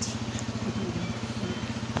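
An engine idling steadily with an even low throb.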